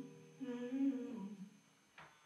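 Live solo woman's voice singing softly to her acoustic guitar: a held phrase that fades out about a second and a half in, then a brief lull.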